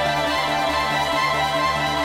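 Instrumental electronic music: held synthesizer chords over a low bass note that pulses about twice a second.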